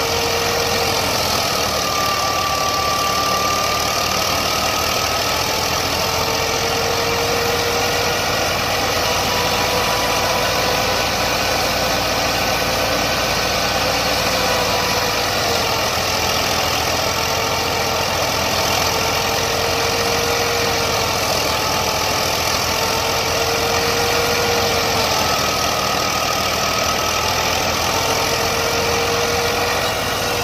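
Massey Ferguson 260 Turbo tractor's three-cylinder diesel running steadily under load while driving a wheat thresher, engine and threshing drum together making a dense, continuous din. A tone within it wavers slightly in pitch now and then.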